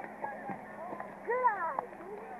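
Background chatter of spectators' voices, with one louder voice calling out briefly about a second and a half in, over a faint steady hum.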